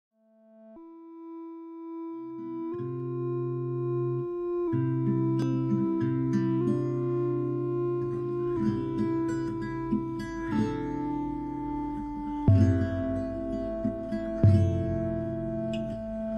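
Ambient modular synthesizer music rising from silence: sustained synth chords that change about every two seconds, moving between the I and IV chords of F major. Plucked notes join from about five seconds in.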